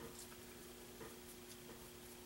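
Faint paintbrush strokes on a carved figure, with a few light ticks, over a steady low hum.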